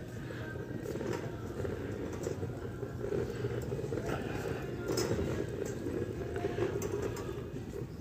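Shopping cart rolling over a tiled store floor, its wheels rumbling and rattling steadily with small clicks as it is pushed along.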